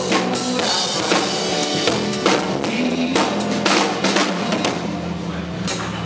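A live band playing, with the drum kit prominent: frequent kick, snare and cymbal strokes over sustained notes from the other instruments.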